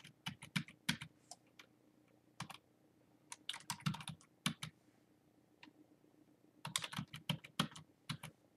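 Computer keyboard typing in several short bursts of keystrokes with pauses between.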